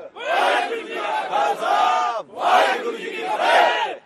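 A group of soldiers shouting a war cry in unison, several long, loud shouts one after another.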